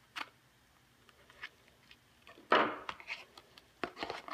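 Paper packaging being cut and torn open with a knife: a light click just after the start, a short rip about two and a half seconds in, and a couple of clicks near the end.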